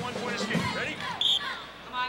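A referee's whistle gives one short, shrill blast about a second in, signalling the wrestlers to start from the neutral position. Voices from the arena can be heard before it.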